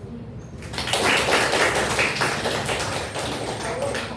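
A small group applauding with hand claps, starting about a second in and easing off near the end.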